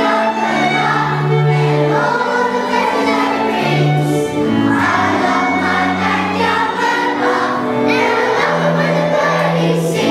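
Children's choir singing a song with bowed-string accompaniment: voices over long held low string notes.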